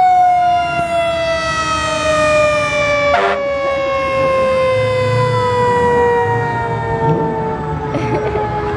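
Fire truck siren sounding one long, loud wail that slowly falls in pitch, with a short sharp burst about three seconds in.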